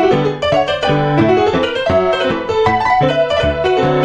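Digital piano playing a solo piece: low sustained bass notes under chords and a melody, struck in a steady rhythm.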